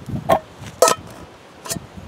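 Anodized aluminum cook kit pieces being handled and set on a small stove: a few light knocks and clinks, the sharpest a little under a second in.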